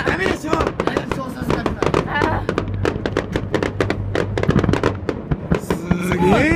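Fireworks popping and crackling in a rapid, uneven run of sharp cracks, with people's voices underneath.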